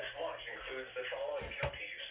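A weather radio broadcast voice reading a tornado watch statement, coming from a radio's speaker and sounding thin with no treble. Two low thumps sound about one and a half seconds in.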